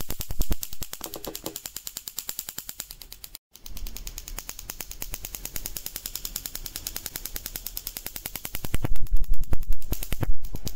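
Mini spark-gap Tesla coil running, a fast, even crackle of sparks at about ten snaps a second. It cuts out briefly about a third of the way in and gets clearly louder near the end.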